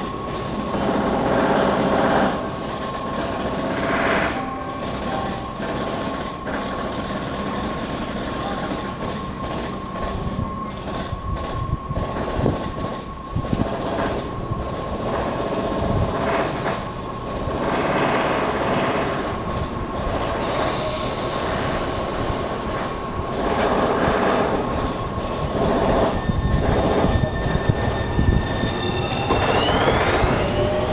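Tobu 30000 series electric train moving slowly along the platform: a steady electric tone over rumbling running noise, with patches of high hiss. Near the end several motor tones rise in pitch as the train gathers speed.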